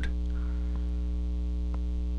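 Steady electrical mains hum with a stack of evenly spaced overtones, picked up in the recording, with two faint ticks about a second apart.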